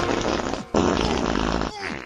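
Fart sound effects: two long farts with a brief gap just under a second in, and a third starting near the end.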